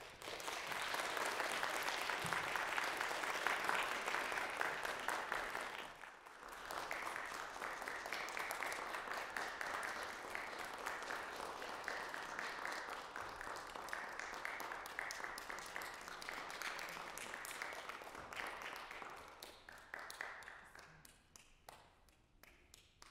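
Audience applauding: a dense clapping that breaks off sharply about six seconds in, starts again at once, and dies away near the end.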